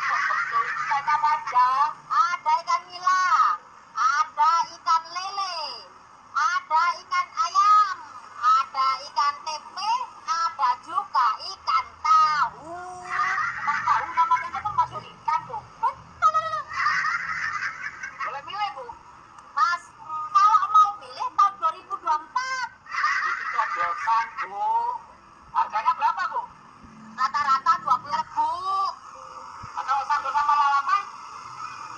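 A woman talking in rapid phrases in an unnaturally high-pitched voice.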